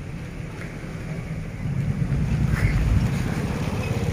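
Wind buffeting a smartphone microphone: a choppy low rumble that grows stronger about halfway through.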